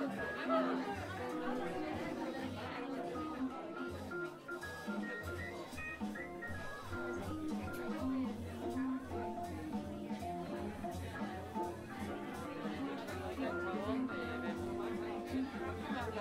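Recorded background music playing in a club between sets, under the chatter of a crowd talking.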